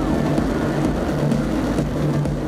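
Rocket launch noise, steady and loud, mixed with electronic background music.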